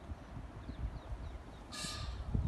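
Wind rumbling on the microphone, with faint high bird chirps and, near the end, one short harsh bird call.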